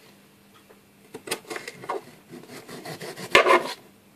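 Knife cutting cucumber on a plastic chopping board: scraping and knocking strokes start about a second in, with a louder clatter near the end.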